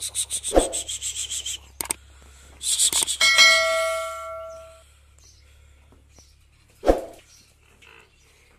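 Subscribe-button animation sound effect: a fast run of clicks, then more clicks and a bell ding that rings out and fades over about a second and a half. Two brief low sounds come near the start and near the end.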